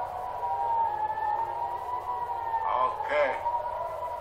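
Civil-defence air raid siren wailing in a steady tone that slowly rises and falls in pitch.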